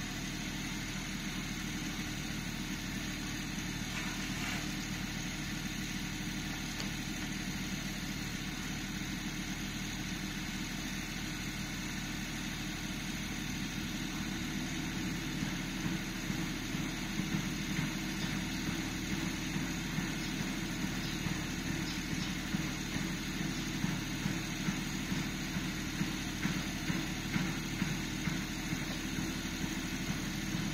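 A steady, low, engine-like mechanical hum at an even level, with light regular ticks or taps over it from about halfway.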